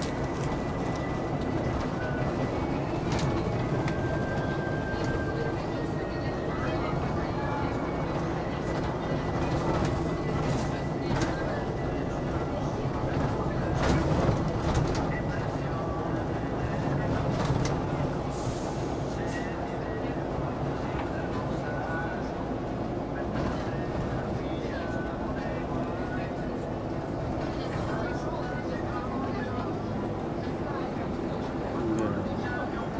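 City bus driving through town, heard from inside the cabin near the front: steady engine and road rumble with scattered rattles and clicks.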